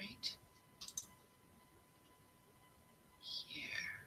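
A few soft computer mouse clicks in the first second, starting a screen share, then near quiet with a faint steady tone in the background.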